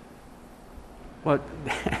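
About a second of quiet room tone, then a man says "But" and gives a short laugh near the end.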